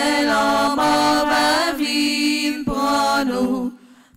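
Women's voices singing a devotional chant unaccompanied, in long held notes, breaking off briefly near the end.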